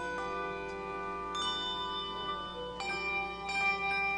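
Handbell choir playing: chords of brass handbells struck together and left to ring, with a new chord coming in every second or so.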